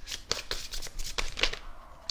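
A deck of angel oracle cards being shuffled by hand: an irregular run of quick, papery card clicks.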